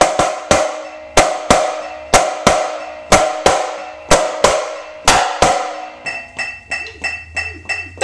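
Marching snare drum played with sticks: loud accented strokes about two a second, each ringing out briefly, with softer notes between. About six seconds in it drops to quieter, quicker, evenly spaced taps.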